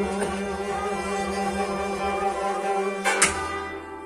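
Instrumental Kashmiri Sufi folk music: a harmonium holding steady reed tones with plucked rababs and a bowed string over it. A single sharp, ringing hit comes about three seconds in, and the music then grows quieter toward the end.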